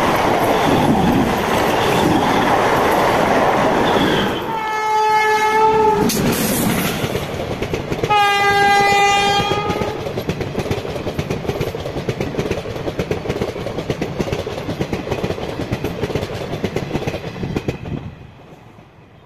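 Indian Railways passenger coaches rolling past close by, wheels clattering on the track, while a train horn sounds two blasts of about a second and a half each, about four and eight seconds in. After about ten seconds the rumble eases to a thinner, quieter clatter.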